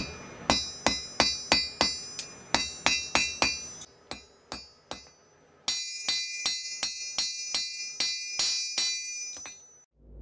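Blacksmith's hand hammer striking steel on an anvil, about three blows a second, each with a bright metallic ring. The blows turn quieter for a second or two midway, then come on strongly again and fade out near the end.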